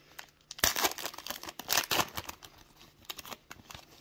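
Foil wrapper of a baseball card pack torn open by hand. There are crackling bursts of tearing and crinkling for about two seconds, then fainter crinkling as the wrapper is peeled back from the cards.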